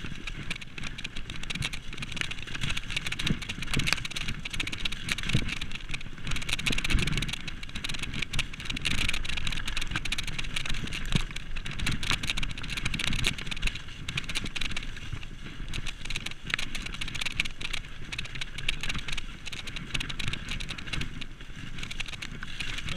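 Mountain bike descending a rough dirt trail at speed: tyres running over dirt and roots, with many short rattles and clatters from the chain and frame over the bumps.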